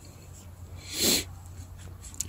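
A single short, breathy exhale, about a second in, over a low steady hum.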